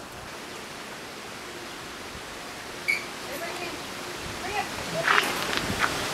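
Steady outdoor rushing hiss with no clear source, with a short faint chirp about three seconds in and faint voices near the end.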